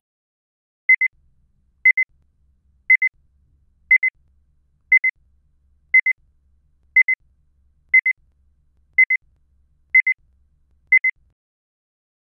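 Electronic beeps, a high-pitched pair each second, repeating eleven times like a countdown timer.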